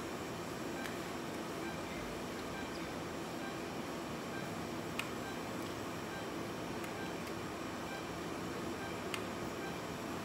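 Steady low background noise with faint steady hum tones and a few faint clicks, about one near the start, one midway and one near the end.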